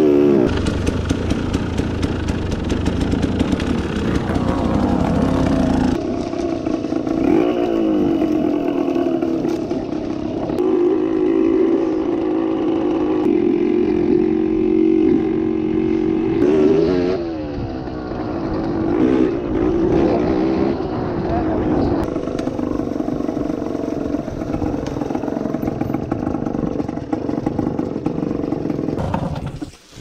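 KTM enduro dirt bike engine heard from the rider's own bike, revving up and down repeatedly with stretches held at a steady pitch as it climbs off-road.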